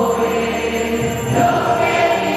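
A choir singing a hymn in long, held notes, with a change of pitch about a second and a half in.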